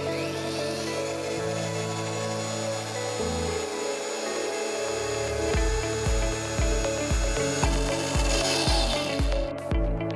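A cordless pipe bender's motor driving its bending segment around a 28 mm copper pipe, under background music that picks up a steady beat about halfway through.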